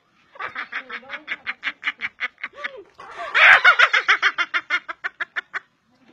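Two women laughing hard in long fits of rapid, breathy pulses, about seven or eight a second. There are two fits, and the second, starting about three seconds in, is louder.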